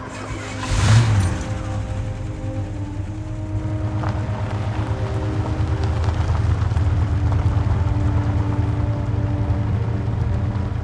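A car engine starts about a second in and then runs steadily with a low hum. Soft film score with long held notes plays underneath.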